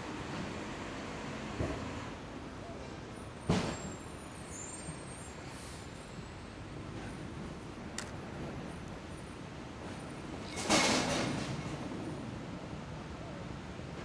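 Steady outdoor traffic noise with a heavy vehicle's air brake hissing once about ten and a half seconds in, fading over a second. A shorter burst comes about three and a half seconds in.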